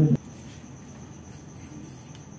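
A voice stops just after the start; after that, only low background with a faint, steady high-pitched chirring tone.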